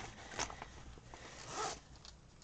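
Zipper of a fabric pencil pouch being pulled, with a short rasp about half a second in and a longer zip near the end.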